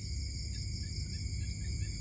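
A steady chorus of night insects trilling at several high pitches, over a low rumble.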